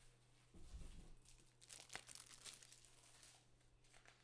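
Faint rustling and crinkling of a sheet of paper being picked up and handled, with a soft low thump about half a second in. A steady low hum runs underneath.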